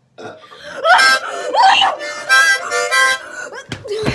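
Harmonica played in a handful of short, loud, reedy chords that start and stop in quick succession, the first big one about a second in.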